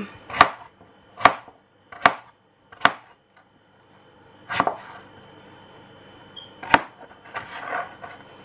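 Knife chopping butternut squash on a cutting board: four sharp knocks less than a second apart, then two more after longer pauses.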